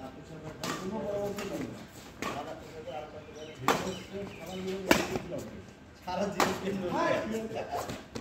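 Badminton rackets hitting a shuttlecock in a doubles rally: about five sharp hits a second or so apart, the two in the middle the loudest, with players' voices between the hits.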